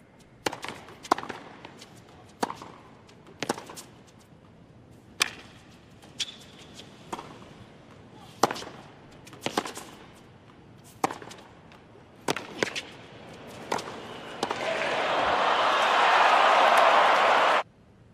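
Tennis rally on a hard court: sharp racket strikes on the ball and bounces, roughly one a second. Then the crowd cheers and applauds, swelling for about three seconds before cutting off suddenly.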